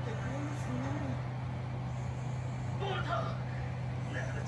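A steady low hum runs throughout, with a few short, faint pitched vocal sounds about half a second in and brief speech-like sounds near the end.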